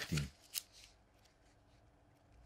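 Thin Bible pages being turned and handled, a faint paper rustle with one short tick about half a second in.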